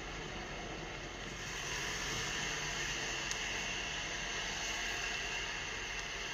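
Steady city street noise of traffic, growing a little louder and brighter about a second and a half in, with one faint click near the middle.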